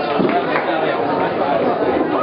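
Several people talking at once in a busy hall, a steady murmur of overlapping voices with no music playing.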